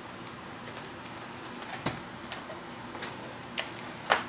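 A few light, sharp clicks and taps from handling a small nail-product bottle and its brush, the clearest about two seconds in and again near the end, over steady room hiss.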